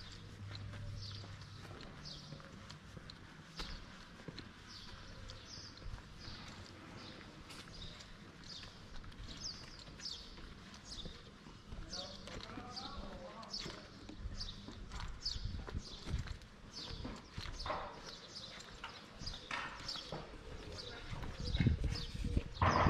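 Footsteps of a person walking on paved street, shoe strikes at an even walking pace of about two a second.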